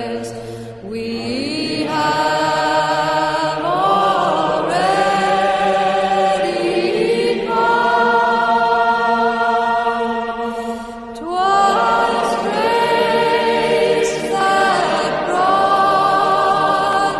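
Slow, hymn-like vocal music: voices hold long sung notes in drawn-out phrases, with brief pauses for breath about a second in and again near eleven seconds in.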